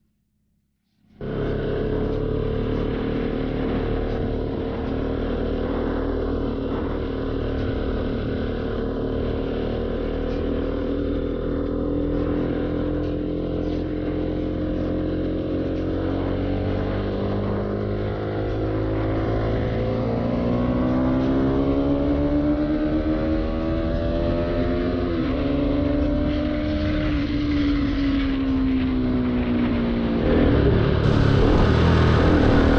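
Bajaj Pulsar 200's single-cylinder engine running as the motorcycle rides along, with road and wind noise. The sound cuts in suddenly about a second in. The engine note holds steady at first, then rises and falls several times in the later part as the throttle and speed change.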